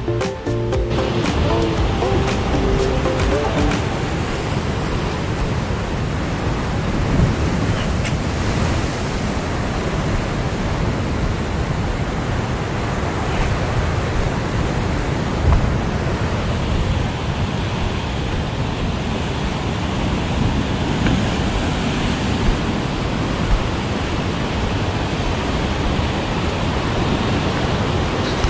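Ocean surf breaking on a rocky shore: a steady, loud rush of noise. Background music fades out in the first few seconds.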